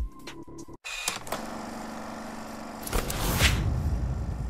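Short logo sting: music with a whoosh sweep about three seconds in, over a low bass swell.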